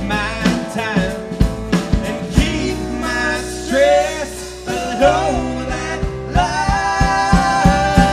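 A live band playing an Americana song on drum kit, electric bass, acoustic guitar and keyboard, with a steady drumbeat and a singing voice in the middle.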